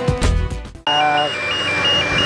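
Background music that cuts off abruptly under a second in, giving way to a machine's two-tone reversing alarm stepping rapidly between two high pitches over a running engine.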